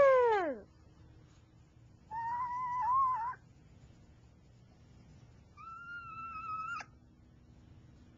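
A child's voice imitating motorbike engines: a held engine noise that drops in pitch and fades about half a second in, then two short wavering engine hums a few seconds apart, the second higher and cut off abruptly.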